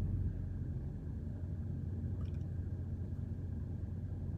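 Steady low hum of an idling engine, with a faint short tick about two seconds in.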